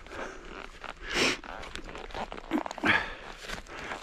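Footsteps through heather on a wet, boggy path, with a few rustling swishes of the plants brushing against boots and clothing; the loudest swish comes about a second in.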